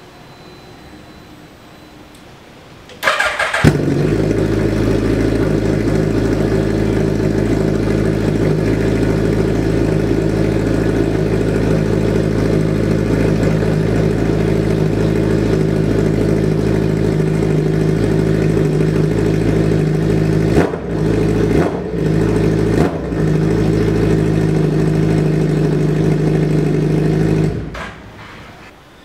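Suzuki Hayabusa's inline-four engine cranked on the starter and catching about three seconds in, then idling steadily. Three brief dips in the sound come about three quarters of the way through, and the engine is switched off shortly before the end.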